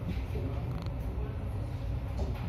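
Rough sea washing against a ship's hull, heard through an open porthole under a heavy, uneven low rumble, with a few brief squeaks over it.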